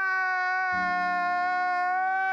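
A man wailing in one long, unbroken, steady crying note.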